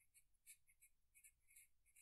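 Marker pen writing on paper: short, faint, irregular strokes as words are written out.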